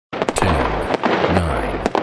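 Firework bang sound effects, about one a second, each a sharp crack followed by a falling boom.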